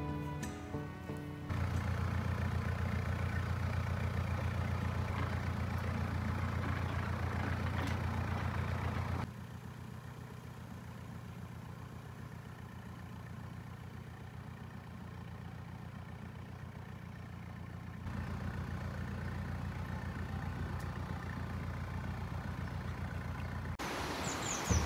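Background music ending about a second in, then a narrowboat's diesel engine running steadily. It drops quieter for several seconds in the middle, then comes back louder.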